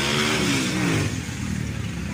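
A motor vehicle's engine running, its pitch rising and then falling over the first second, loudest in the first half.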